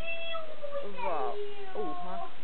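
A child's high-pitched voice: several short, excited calls that rise and fall in pitch, one about a second in and more near the end.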